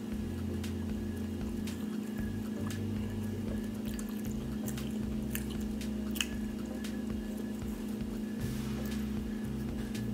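Chewing and soft, wet mouth clicks from eating a buttered yeast dinner roll, with scattered small clicks over a steady low hum.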